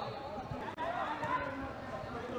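Faint, distant voices of players calling out on a football pitch during play, over a light outdoor background hiss.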